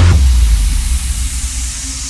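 Electro house track: the pulsing kick and bass drop out, leaving a white-noise sweep that slowly falls in pitch over a sub-bass tone fading away.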